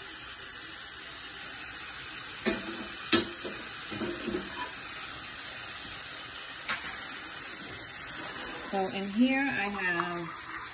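Ground beef and onion sizzling steadily as they fry in a nonstick pan, with a metal spoon clicking against the pan twice, about two and a half and three seconds in.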